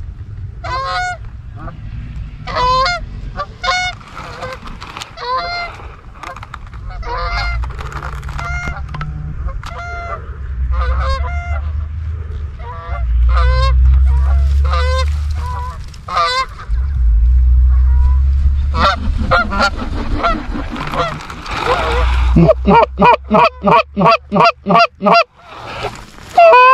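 Canada geese honking as a flock circles overhead, with wind buffeting the microphone in loud gusts through the middle. Near the end the honks come in a fast, very loud run, about three a second.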